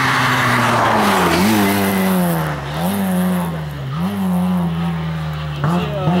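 Rally car's engine revving hard through a series of bends, its pitch sagging and then jumping back up about four times as the throttle is lifted and reapplied; a rushing noise of the car's approach fills the first second.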